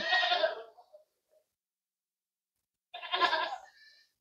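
Gulabi Hyderabadi goat bleating twice: a loud call at the start lasting about a second, then a shorter one about three seconds in.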